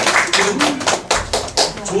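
A small audience clapping in quick, irregular claps, with laughter mixed in. The clapping thins out near the end.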